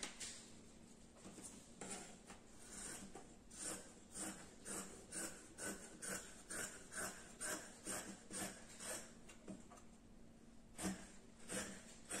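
Fabric shears snipping through cotton jersey knit: a faint, steady run of cuts about two a second, with one louder snip near the end.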